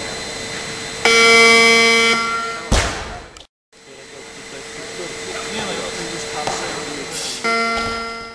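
Competition buzzer sounding for just over a second, the referees' signal to lower the bar, then the barbell dropped onto the platform with a heavy thud. After a brief dropout there is steady arena background noise, and the same buzzer tone sounds again near the end.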